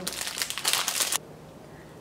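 Clear plastic wrapping crinkling as it is handled, stopping after a little over a second.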